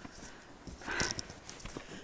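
Footsteps on stone cave steps: irregular light taps and scuffs, with a louder scuff about a second in.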